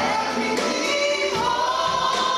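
A gospel choir singing live, with women's voices at the microphones in front. A high note is held from about halfway through.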